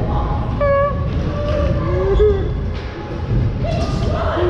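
Manual wheelchair rolling down a concrete skatepark ramp: a steady low rumble of wheels on concrete, with short voices calling in the hall about a second and two seconds in.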